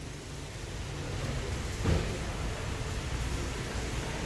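Steady background noise, a hiss over a low rumble, broken by a single soft thump about two seconds in.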